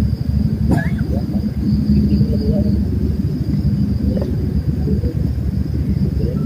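A steady, loud low rumble, with a continuous high, thin insect drone of crickets above it.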